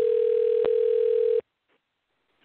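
A steady single telephone tone lasting about a second and a half, with one click partway through, cut off sharply.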